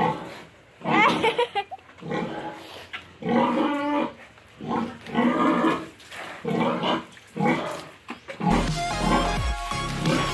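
A pig calling in short squeals, about one a second, each with a shifting pitch. Background music with a steady bass comes in near the end.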